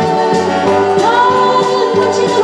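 A woman singing live to two strummed acoustic guitars; about halfway through, her voice slides up into a long held note.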